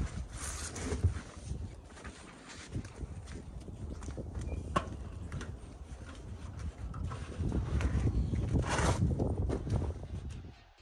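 A large black fabric sheet rustling and flapping as it is handled in a pickup truck bed, with scattered knocks and steps on the metal bed and one sharp click about halfway through.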